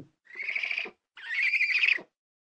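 Owl call sound effect: two high, raspy, rapidly pulsing calls, each under a second long, with a short gap between them.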